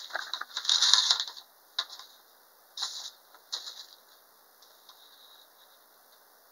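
Paper rustling as a greeting-card envelope is opened and the card is slid out. There is a loud spell of rustling over the first second or so, then a few short rustles over the next couple of seconds.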